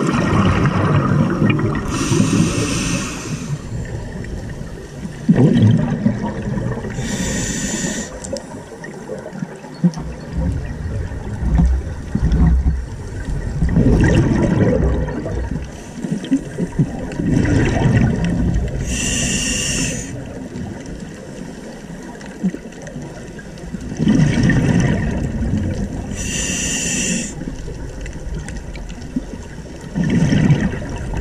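Scuba diver breathing through a regulator underwater: four slow breaths, each a hissing inhalation through the demand valve followed by a low rush of exhaled bubbles.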